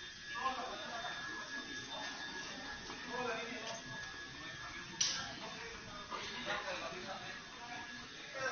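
Faint, indistinct voices of people murmuring, over a thin steady high-pitched tone, with one sharp click about five seconds in.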